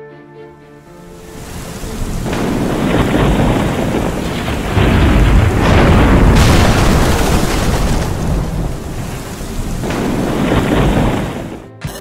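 Thunderstorm: steady rain with rolling thunder, swelling in over the first two seconds, loudest a little past the middle, and fading out just before the end.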